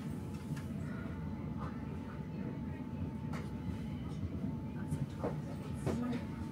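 Interior of an S-Bahn commuter train standing at a platform: a steady low hum from the train's onboard equipment, with a faint steady tone, scattered light clicks and knocks, and faint voices.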